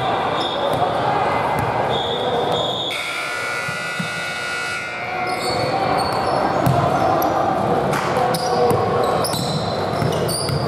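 Basketball game sounds echoing in a large gym: a ball bouncing on the hardwood floor and sneakers squeaking in short high squeals, over indistinct voices of players and onlookers.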